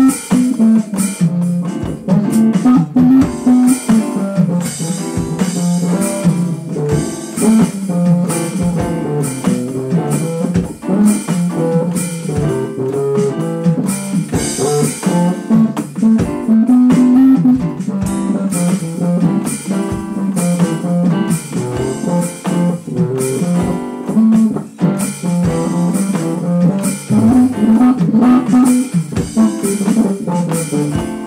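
Small jazz combo playing a standard, with a plucked bass line moving up front over drums played on an electronic drum kit.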